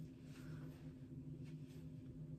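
Faint rustling of hair and a towelling bathrobe cord being unwound by hand, over a low steady hum.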